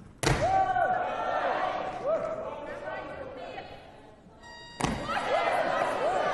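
Two sharp thuds of a weightlifter's feet and barbell hitting the competition platform, one just after the start as she catches the clean and one near the end as she drives the jerk overhead. Each is followed by voices shouting encouragement in a large hall.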